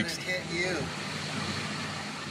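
Steady hiss of a space station module's cabin air, typical of its ventilation fans, with a brief murmur of voice in the first second.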